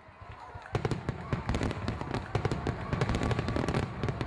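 Fireworks going off: a dense, irregular run of crackles and pops over low rumbling booms, starting about a second in.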